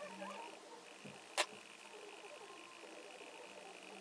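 Quiet room tone with a faint steady high-pitched hum, broken by one short sharp click about a second and a half in.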